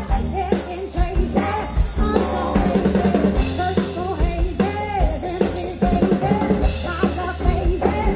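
A blues-rock band playing live, drum kit driving it with snare, bass drum and cymbal hits under electric guitar, while a melody line slides and bends in pitch above, from violin and singing voice.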